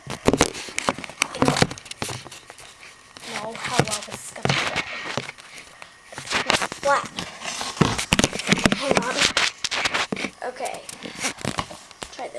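Camera handling noise as it is picked up and repositioned among containers: repeated knocks, clicks and scrapes, with crinkling rustles of plastic and cardboard tubs being shifted. Some quiet mumbled speech comes in between.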